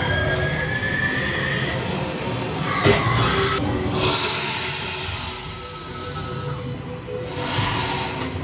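Haunted-house soundtrack of eerie music and sound effects, with a sharp bang about three seconds in and a loud burst of hissing noise about a second later, as a scare is sprung.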